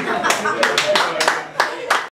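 A person clapping hands: about half a dozen claps, unevenly spaced, over talking and laughter.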